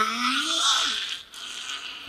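A creature's raspy, strained scream of pain, rising in pitch and then trailing off about a second and a half in.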